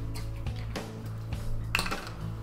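Quiet background music with a few light clicks as a plastic bottle cap is twisted off a small milk bottle and set down on a counter, the sharpest click near the end.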